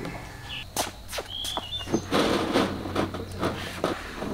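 Blanched green beans being handled and spread out on wire-mesh drying screens: a few sharp clicks and knocks, then about a second of rustling with more clicks.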